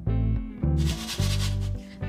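Oven-baked tortilla pieces rattling and scraping dryly on a metal baking tray as it is moved, starting a little under a second in; this dry crisp sound is the sign that they are baked crisp and ready. Background music with a steady bass plays underneath.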